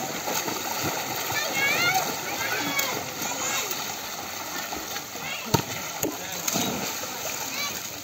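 Pool water splashing from a swimmer's front-crawl strokes, under steady chatter and shouts from people around the pool. Two sharp clicks stand out around the middle.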